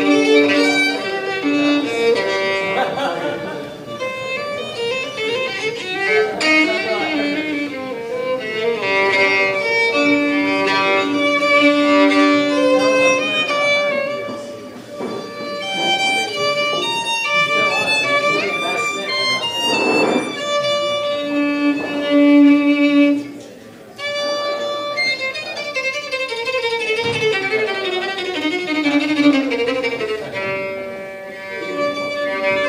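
Solo violin bowed live, playing a melody of held and moving notes, with a brief lull about three-quarters of the way through.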